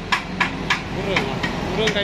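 Sharp metal clanks and knocks, about four in the first second and a half, as a portable concrete mixer is handled, over a steady engine hum.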